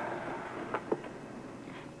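Two light clicks a fraction of a second apart a little under a second in, over the steady hiss of an old VHS recording.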